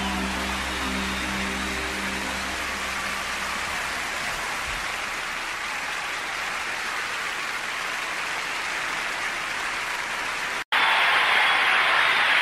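The end of a song fades out into a crowd applauding. Near the end the applause cuts off abruptly for an instant, and a louder round of applause starts straight after.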